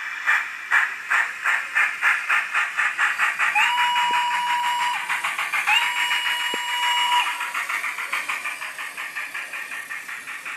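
Model steam railcar's onboard sound effects while it runs: rhythmic steam chuffs, about three a second and quickening, with two whistle blasts of about a second and a half each near the middle.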